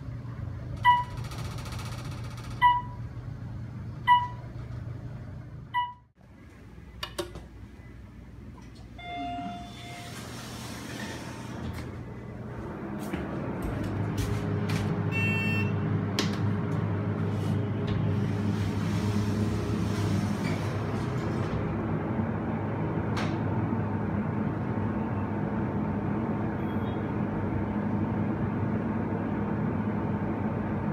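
Hydraulic elevator: a run of short evenly spaced electronic beeps, then clicks and beeps from the car's buttons. About 13 seconds in, the hydraulic pump motor starts and hums steadily as the car travels up.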